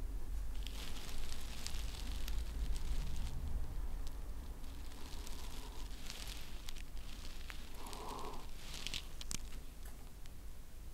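Faint sipping and breathing of a man drinking beer from a glass, with a few small clicks, over a low steady hum.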